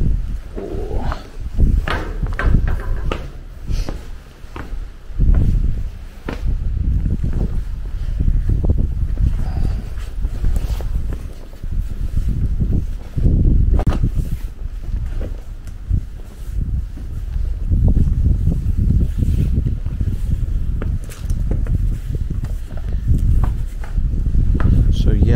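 Wind buffeting the microphone in uneven gusts, with scattered footsteps and knocks on the rig's metal decking and stairs.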